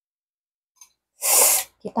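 A woman sneezes once, a short sharp burst just past a second in.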